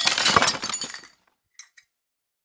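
Glass-shattering sound effect: a crash of breaking glass, with pieces tinkling and fading out about a second in, then two small clinks.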